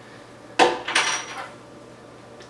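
Plastic GoPro helmet-mount parts being unscrewed and pulled apart by hand: a sharp click about half a second in, then a second, lighter clink with a short high ringing just after a second.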